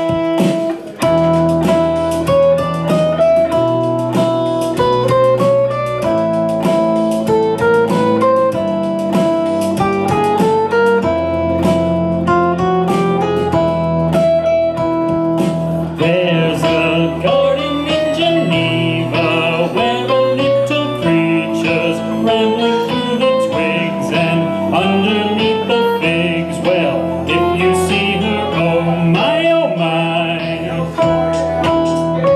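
Electric guitar picking a single-string melody over a backing track with steady bass notes; the melody climbs in short step-wise runs, again and again. About halfway through, a brighter high part joins the backing.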